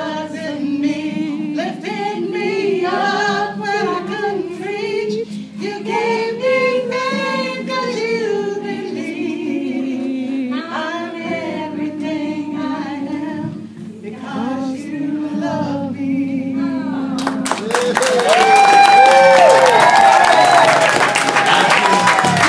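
A woman sings a slow ballad over a live band's held, sustained accompaniment. About 17 seconds in, the song ends and the audience breaks into clapping and cheering.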